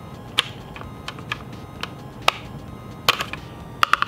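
A small flathead screwdriver prying at the hard plastic louvers of a 2018 Subaru WRX dash air vent. It makes a string of sharp, irregular clicks and taps as the plastic pieces are worked loose, the loudest about two and three seconds in.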